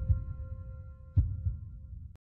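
Heartbeat sound effect in an outro soundtrack: low thumps in lub-dub pairs, one pair starting a little past a second in, over held tones that die away.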